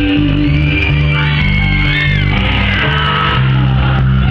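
Loud amplified live band music, with sustained bass notes changing every second or so, and a man singing into a handheld microphone over it.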